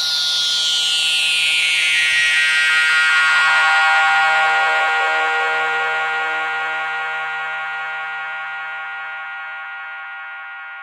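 Synthesizer drone ending the song: a sustained chord of many steady tones, with tones gliding up and down over the first couple of seconds. It swells for about four seconds, then slowly fades out.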